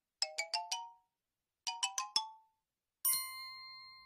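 Cartoon sound-effect chimes: two quick runs of four rising bell-like notes, then a single bright ding about three seconds in that rings out and slowly fades.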